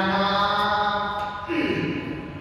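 A man chanting a verse in a long, held melodic line, each note steady, with the chant ending about one and a half seconds in.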